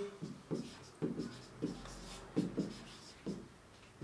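Red marker pen writing on a whiteboard: a run of short, irregular scratchy strokes as a handwritten line is written out.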